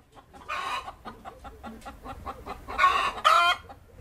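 Chickens clucking, then a rooster crows, loudest about three seconds in.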